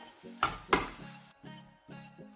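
A metal spoon scraping twice against a steel pan of cooking paneer masala over a light sizzle, which cuts off suddenly just after a second in. Background music plays throughout and is all that is left afterwards.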